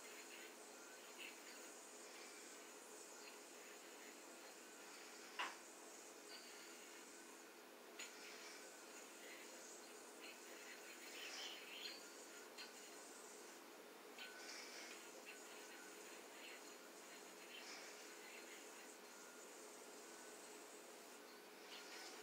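Near silence: faint steady room hum with a few soft clicks from yoyo play, the sharpest about five seconds in.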